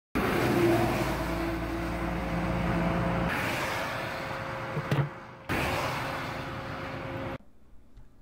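Road traffic passing, heard from inside a parked vehicle whose engine is idling with a steady hum. The sound comes in three short clips joined by abrupt cuts, with a brief knock about five seconds in.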